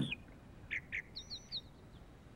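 Faint bird chirps: two short calls just under a second in, then a quick run of four high, falling chirps.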